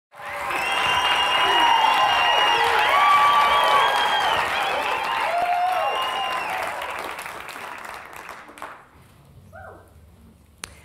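Audience applauding, with whoops and calls riding over the clapping, fading away over the last few seconds.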